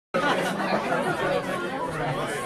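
Crowd chatter: many voices talking over one another, as in a busy bar.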